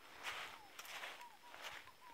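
Faint footsteps on dry leaf litter and stones, with a few faint short chirps.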